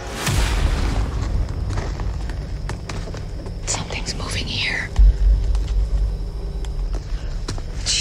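Suspense soundtrack: a low rumbling drone with scattered clicks and high gliding sounds, then a deep boom about five seconds in.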